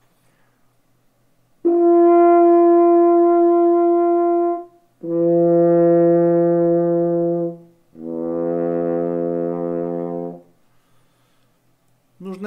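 French horn playing three long, held notes with clean starts, each lower than the one before; the last is softer.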